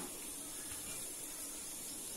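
Faint steady hiss from a kadai of fish curry simmering on a gas stove.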